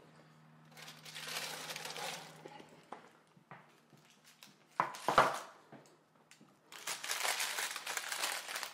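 Baking paper crinkling and rustling as a hot brownie tray is taken from the oven and set down, with a low hum in the first couple of seconds, a few light clicks, and a sharp knock a little after five seconds in.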